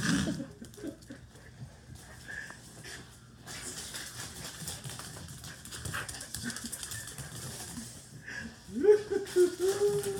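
Small dogs' claws and paws skittering and pattering on a tile floor as they race after a thrown toy. Near the end comes a rising, then held voice-like call lasting about a second.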